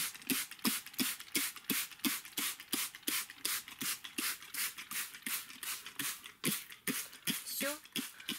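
Hand trigger spray bottle misting plant-stimulant (Epin) solution onto seed-tray soil: quick repeated squirts, each a short hiss, about three to four a second, stopping just before the end.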